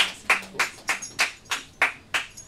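Sound effect for an animated logo: a steady run of sharp clap-like clicks, about three a second, with faint high ringing in the second half.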